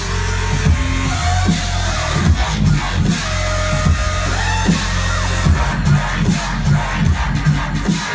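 Dubstep DJ set played loud over a club sound system, with heavy, pulsing bass and gliding synth tones above it.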